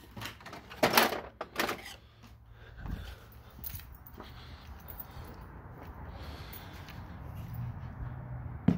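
A metal tool chest drawer is opened and tools are rummaged, giving a few sharp clicks and clatters in the first two seconds. A low thump follows about three seconds in, then faint handling noise.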